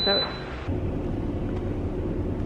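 Steady low rumble of a car idling, heard from inside the cabin, starting suddenly a little over half a second in.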